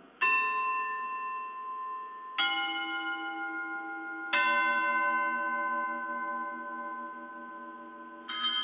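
Altar chime struck three times during the elevation of the host, each strike a different note, the ringing left to die away slowly. It signals the consecration.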